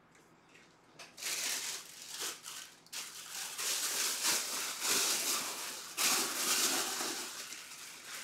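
After about a second of near silence, a plastic bag crinkles and rustles in irregular crackles as a football helmet is handled in it.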